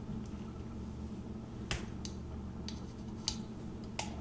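Small plastic gears clicking and tapping as they are fitted onto the shafts of an electric salt and pepper grinder's gearbox: about five sharp, scattered clicks, the loudest a little after three seconds.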